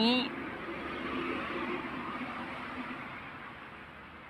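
Faint, steady hiss of background noise with no distinct events, slowly fading away.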